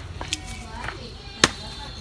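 Pruning shears snipping twigs on a cluster fig bonsai. One sharp, loud click comes about one and a half seconds in, and a fainter one near the start.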